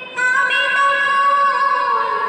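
A woman singing solo and unaccompanied into a microphone. After a brief breath she holds a long high note that slides down near the end.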